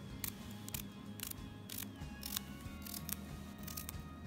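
A serrated kitchen knife slicing through raw ivy gourd, sharp crisp cuts about every half second, over background music.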